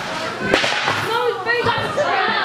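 Sharp slap-like impacts of a wrestling bout, one about half a second in and a weaker one near the end, under shouting from the crowd with children's voices.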